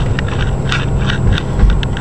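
Car cabin noise while driving: a steady low rumble of road and engine, with scattered light clicks and a thump about one and a half seconds in.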